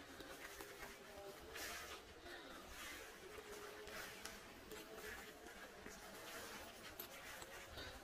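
Near silence: a faint outdoor background with a few soft rustles and a faint wavering hum.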